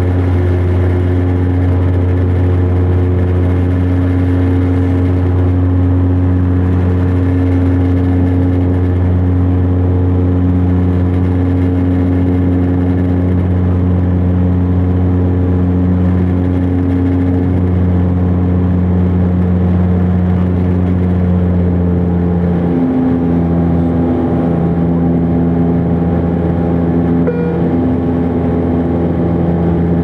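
Bombardier Dash 8 Q400's Pratt & Whitney PW150A turboprop and six-blade propeller in climb, heard inside the cabin as a loud, steady drone with a deep hum and several steady tones above it. About 23 s in the tones step to a slightly different pitch and the deep hum eases.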